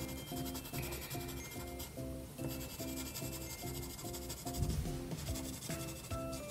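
Colored pencil rubbing across paper as it shades, over quiet background music with an even, repeating pattern of notes.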